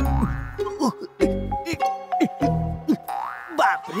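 Comedy film background score with a low bass line, punctuated by repeated short springy pitch-bending sound effects, several times over the four seconds.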